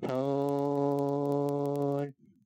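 A man's voice holding one low, steady note for about two seconds, like a drawn-out chanted syllable, cutting off abruptly; faint clicks sound over it.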